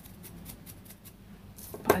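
Faint, scattered light clicks and handling noises as a paintbrush and a small resin cast are handled over a paper-covered work table; a woman's voice starts near the end.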